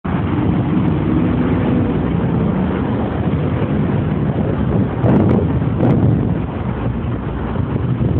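Busy city road traffic: a steady rumble of passing cars and trucks, with engine hum clearest in the first two seconds and two brief thuds about five and six seconds in.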